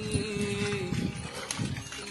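A herd of cattle walking along a muddy lane, their hooves making scattered clip-clop steps. A voice holds one long steady note through the first second.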